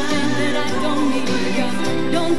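A live pop band playing, with guitars and drums behind a woman singing lead into a microphone in long, wavering held notes.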